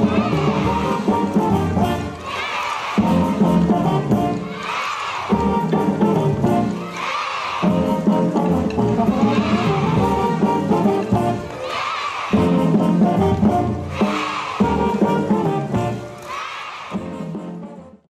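Dixieland jazz band playing a lively farewell tune with brass leading, fading out at the very end.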